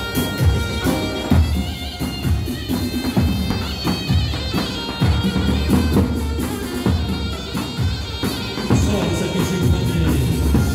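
Zurna, a Kurdish double-reed shawm, playing a melody over a large dahol drum beating a steady dance rhythm.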